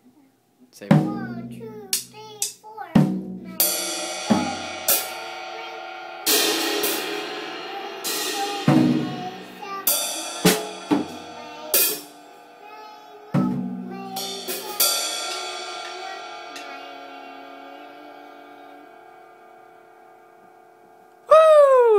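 Acoustic drum kit played unevenly by a young child: irregular hits on the drums and cymbals, starting about a second in. Over the last few seconds a single cymbal wash rings out and slowly fades.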